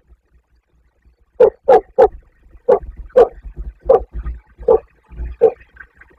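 A dog barking: a run of about eight short, loud barks over four seconds, starting about one and a half seconds in.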